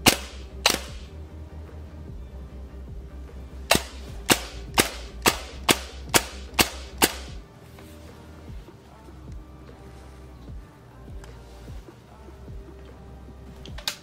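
Airsoft AEG (ASG Scorpion EVO with 12:1 gears and precock) firing single semi-auto shots as its precock setting is tuned: two sharp cracks at the start, then eight more about half a second apart. Background music with a steady low beat plays underneath.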